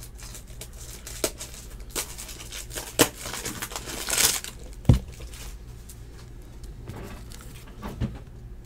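Trading-card foil pack torn open and its wrapper crinkling, with scattered clicks and rustles of cards being handled, a short rustle about four seconds in and a light knock just after it.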